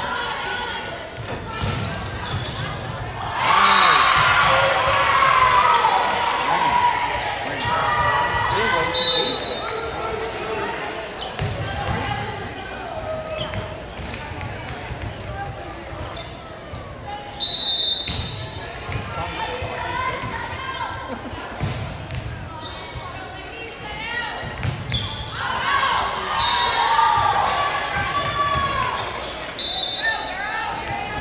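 Volleyball play in a large echoing gym: the ball is struck again and again amid players' shouts and spectators' cheering, which swell loudest a few seconds in and again near the end. Short shrill referee's whistle blasts sound several times as rallies start and end.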